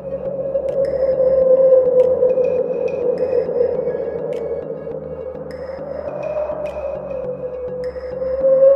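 Background music: a slow ambient electronic track with a steady sustained drone, a shifting bass line and short, high, bell-like notes repeating over it. It fades in from silence at the start.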